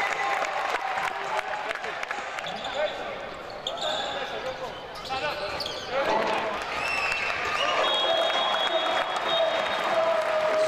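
Basketball game sound on a hardwood court: the ball bouncing, players' sneakers squeaking, and players and coaches calling out.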